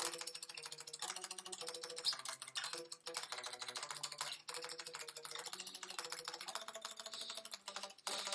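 Electric guitar riff played with fast, steady picking: a rapid run of clicking pick attacks over low notes that change pitch every half second or so, with a brief break about three seconds in.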